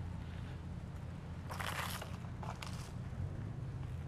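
Mountain bike rolling slowly over rough, littered pavement: a steady low rumble, with a brief crunching rush about one and a half seconds in and a couple of small clicks just after.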